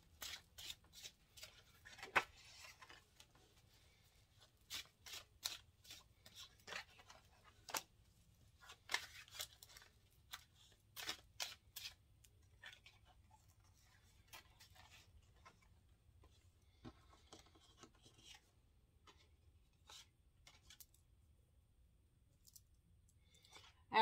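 A deck of tarot cards shuffled by hand: faint, irregular snaps and slides of cards, coming thick in the first half and thinning out toward the end.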